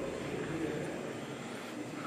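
Steady murmur of many people talking quietly at once in a large, echoing hall, with no single voice standing out.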